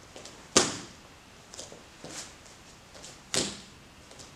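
Two sharp snaps, about three seconds apart, from a young taekwondo student's techniques during the Taegeuk Oh Jang form: the cotton uniform cracking as a strike or block is snapped out. Softer rustles and light bare-foot steps on the foam mat come between them.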